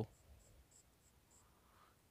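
Faint, short scratches of a marker writing on a whiteboard.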